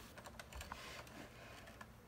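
Faint, scattered light clicks and ticks over quiet room tone.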